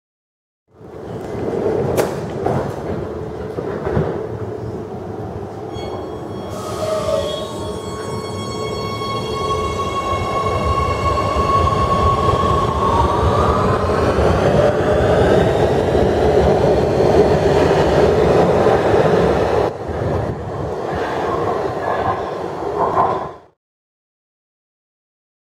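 Oslo Metro MX3000 train at a station platform pulling away: its electric drive whines and rises in pitch as it speeds up, and the running noise grows louder. Two sharp clicks come a few seconds in, and the sound cuts off abruptly near the end.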